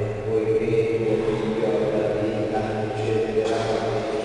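Sung liturgical chant, a voice holding long notes in phrases over a steady low hum.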